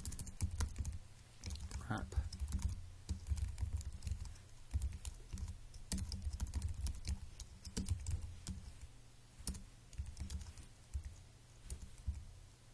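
Typing on a computer keyboard: rapid, irregular keystrokes that thin out near the end.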